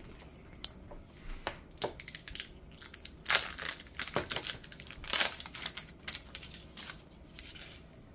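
Plastic wrapper crinkling and tearing as it is peeled off a plastic toy capsule ball, in irregular crackles, loudest around the middle.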